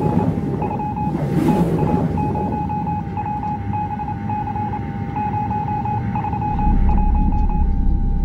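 Electronic title-sequence music: a steady high tone with rapid stuttering beeps over it. A whoosh sweeps through at the start and another about a second and a half in, and a deep low drone swells in near the end.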